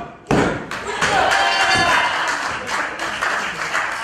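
A referee's hand slaps the wrestling ring mat once just after the start, the last of three evenly spaced count slaps in a pin count, then voices carry on in the hall.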